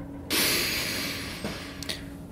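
A long breathy exhale close to the microphone, like an embarrassed sigh, starting suddenly about a third of a second in and fading over about a second and a half, with two faint clicks near the end. A faint steady hum runs underneath.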